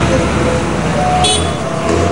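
Street traffic noise: bus engines running with a low rumble, under scattered voices of people in the street.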